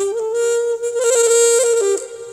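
Saxophone playing one long held note with small ornamental turns in pitch partway through, in a live band's music.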